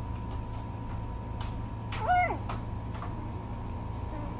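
A one-week-old Bordoodle puppy gives a single short, high squeak that rises and falls in pitch, about two seconds in.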